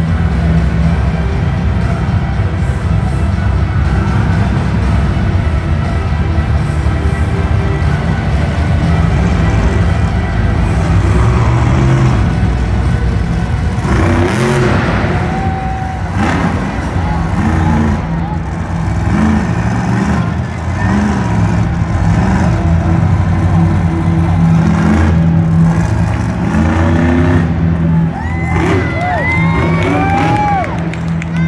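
A monster truck's big-block engine runs loud and revs as the truck drives the dirt track and pulls two-wheel stunts, with a steady deep drone throughout. Arena music and a voice over the PA play along with it.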